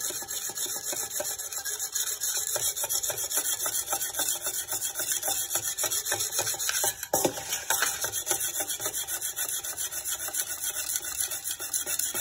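A whetstone rubbed back and forth along the wet steel blade of a Chinese cleaver in quick, steady, rasping strokes: the knife being sharpened.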